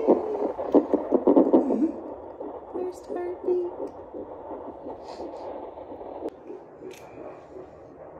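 Fetal Doppler on a pregnant woman's belly playing the baby's heartbeat, with a woman laughing loudly in the first two seconds.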